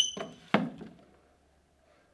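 Two knocks on a classroom desk about half a second apart: hands slapping down on the desktop, the first knock with a brief high ring, then arms and head dropping onto it with a duller thud.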